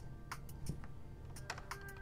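Plastic LEGO bricks clicking and tapping as pieces are handled and pressed into place on a build: a handful of sharp clicks at irregular intervals, more of them near the end.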